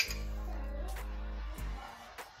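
Background music with steady held notes, opening with a single sharp click.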